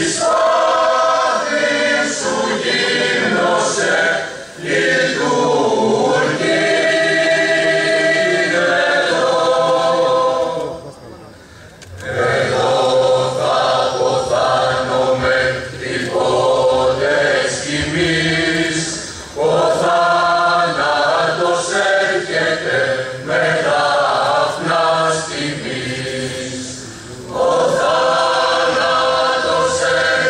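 A choir singing a slow piece in long held phrases, with short pauses between phrases and a longer one near the middle.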